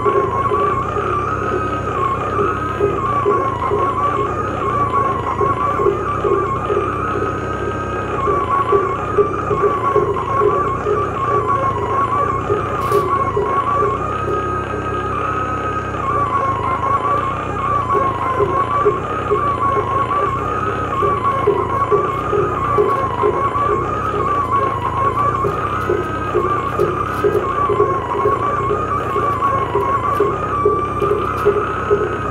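Live electronic music from tabletop synthesizers: a high electronic tone wavers slowly up and down, roughly once a second, over a faster pulsing lower drone and a bed of noise.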